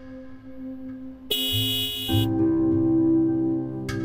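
Background score music of held, ambient tones. A bright high chord comes in a little over a second in and lasts about a second, then a louder, fuller held chord takes over.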